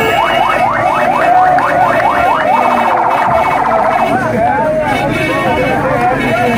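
An electronic siren sounds a quick run of rising whoops, about five a second, then switches to a rapid warble for about a second before stopping, over a street crowd shouting and chanting.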